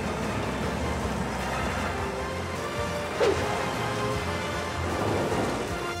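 Cartoon crawler bulldozer driving on its tracks: a low, steady rumble of engine and tracks under background music.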